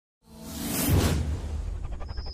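Whoosh sound effect of an animated logo sting: after a moment of silence it swells in, peaks about a second in, and trails off over a deep, sustained low rumble as music begins.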